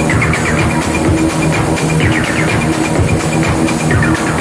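Electronic dance music playing loud over a club sound system: a steady bass line under a repeating high synth figure that comes round about every two seconds.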